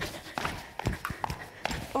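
A skipping rope slapping a sports-hall floor as feet land from each jump, in a steady rhythm of about two and a half strikes a second.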